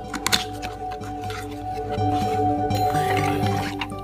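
Background music over the opening of a thin cardboard product carton: a few sharp clicks as the tuck flap is pulled open near the start, then a rustling slide as the contents are taken out.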